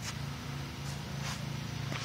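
Steady low background hum, like a machine running, with a few faint ticks about a second in.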